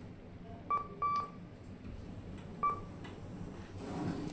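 Lift floor-selection buttons beeping as they are pressed: three short electronic beeps, the second a little longer, over a steady low hum.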